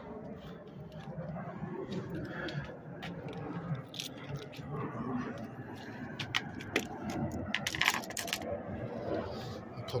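Handling noise from hand tools being carried: scattered clicks and light metallic rattles, most of them about four seconds in and again between six and eight and a half seconds, over a steady background haze.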